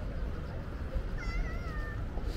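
A single wavering, meow-like animal call starting a little after a second in and lasting under a second, falling slightly in pitch, over a steady low outdoor rumble.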